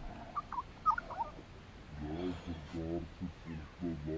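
A few short bird chirps in the first second or so, then a man's low voice in short wordless pulses from about halfway through.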